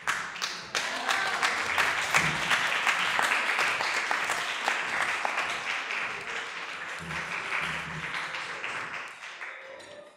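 Audience applauding: dense clapping that starts suddenly and fades away near the end.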